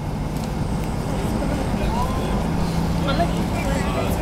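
Cabin noise of a Boeing 757-200 taxiing at low power: a steady low hum from the jet engines with a droning tone, and faint passenger voices in the cabin.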